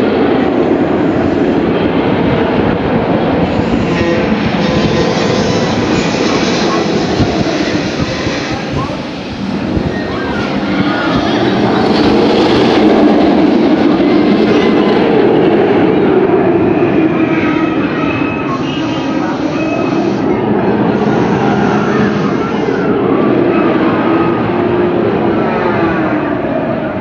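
Green Lantern, a Bolliger & Mabillard stand-up steel roller coaster, with its train rumbling along the track through loops and curves. The rumble swells and fades as the train moves and is loudest about halfway through.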